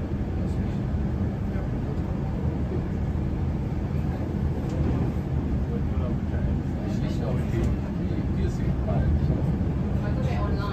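Steady low rumble of an electric passenger train running along the line, heard from inside the carriage, with indistinct voices in the background.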